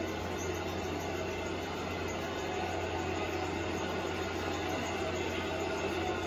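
Steady rumbling noise with a constant low hum underneath, unchanging throughout.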